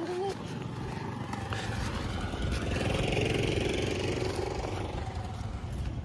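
A motor vehicle passing by, its engine noise building to a peak about halfway through and then easing off. A short child's vocal sound comes right at the start.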